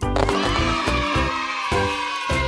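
Background music with a horse-whinny sound effect laid over it, a long wavering call that starts suddenly at the beginning.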